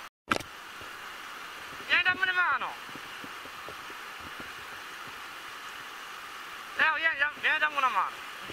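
Steady rush of river water pouring over rapids, cut to silence for a moment at the very start. Short high-pitched calls that rise and fall in pitch break in twice: once about two seconds in, then as a quick series near the end.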